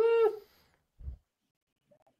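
A man's short, drawn-out 'eh' of doubt, high-pitched and falling slightly, followed about a second later by a brief low thump.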